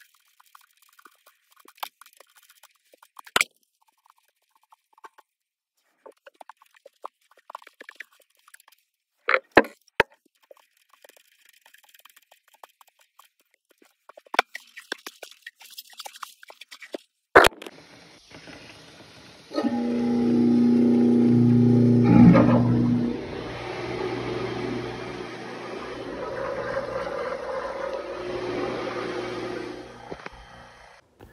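Sparse clicks, taps and scrapes of plastic drain fittings being worked into place under a sink, with a sharp snap about 17 seconds in. About 20 seconds in, a louder steady sound with held tones takes over and lasts to the end.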